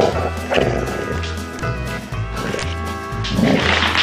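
Background music with a steady beat, over which basset hounds at play growl: a growl about half a second in and a louder, longer one near the end.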